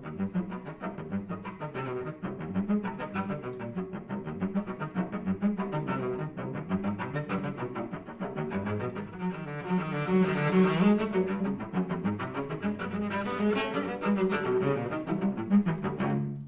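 Solo cello playing a fast run of short, bouncing spiccato notes, growing louder around ten seconds in, heard through a video call's compressed audio. It is bowed with less bow and slackened bow hair, to make the spiccato gentler.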